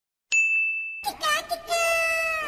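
A single bright chime strikes about a third of a second in and rings out for most of a second. About a second in, a wavering pitched musical sound takes over and settles into a held note.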